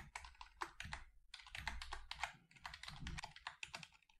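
Typing on a computer keyboard: quick runs of key clicks, with short pauses about a second in and again about two and a half seconds in.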